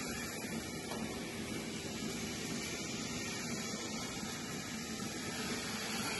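Steady mechanical hiss and hum of a parallel milking parlour's milking machines running while cows are milked.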